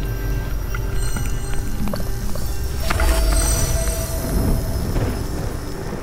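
Ambient sound-design score of an experimental film: sustained ringing tones over a steady low rumble, swelling with a new tone about three seconds in.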